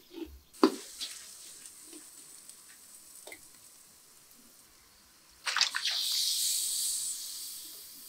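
Onion-and-spice mixture sizzling in a steel wok while a wooden spoon scrapes and stirs it, with a few clicks of the spoon on the metal. About five and a half seconds in, raw chicken livers are tipped in and the wok sizzles much louder, fading over the next two seconds.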